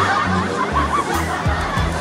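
People laughing and chuckling over background music with a steady run of bass notes.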